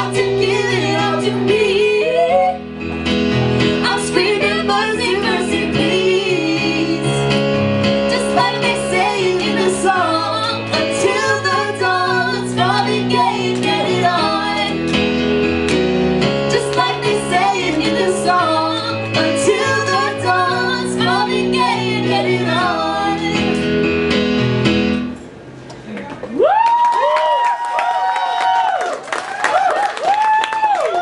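Yamaha electric keyboard playing sustained chords under wordless vocal runs. About 25 seconds in, the keyboard stops and the voices hold long, wavering notes unaccompanied.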